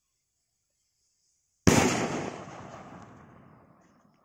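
A jumbo kwitis skyrocket bursting high in the air: a single sharp bang about a second and a half in, followed by a long rolling echo that fades away over about two seconds.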